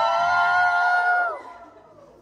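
A group of women cheering together with a long, high-pitched held shout that breaks off about one and a half seconds in.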